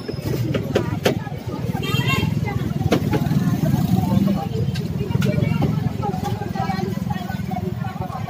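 Knocks and clatter from a wooden vendor stall's frame and shelving being pulled apart by hand, with sharp strikes about a second and three seconds in. Under them are a steady low rumble and workers' voices, one raised about two seconds in.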